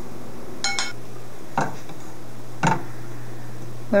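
A spatula knocking three times against a mixing bowl while stirring dry ingredients, the first knock with a brief ringing clink, over a steady low hum.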